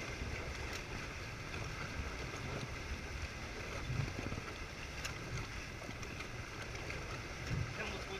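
Steady rush of wind and water from a Prindle 18-2 catamaran sailing fast over choppy water, with wind rumbling on the camera microphone.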